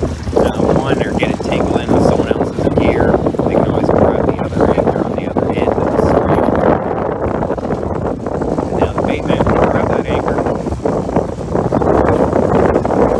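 Steady, loud running noise of a lobster boat at sea while a trap line is hauled aboard: engine and hauler drone mixed with water washing along the hull.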